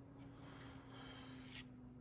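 Near silence with a faint rustle of trading cards being slid through the hands, and a brief papery scrape about a second and a half in, over a faint steady hum.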